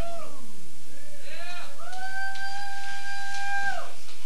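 Whooping and howling from a voice between songs: a few short rising-and-falling whoops, then one long held howl that slides down at the end.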